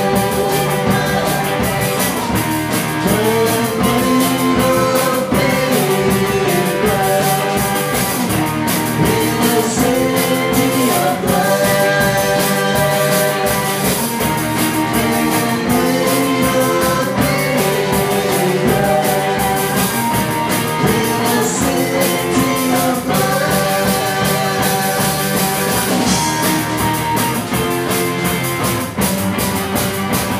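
Live indie rock band playing a song: electric guitars and a drum kit, with a melody line over a steady beat.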